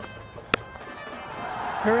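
Cricket bat striking the ball once, a single sharp crack about half a second in, as the batsman hits a six to leg side. The crowd noise then swells.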